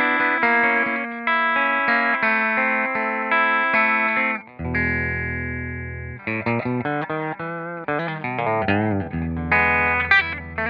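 Fender American Elite Telecaster played through a Fender '65 Deluxe Reverb reissue amp on the bridge pickup, clean, with a little gain. Chords give way to a low chord left ringing about halfway through, then a single-note lick with bends and vibrato, and chords again near the end.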